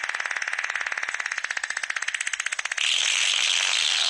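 A fast buzzing rattle of even pulses, then about three seconds in a louder steady hiss takes over.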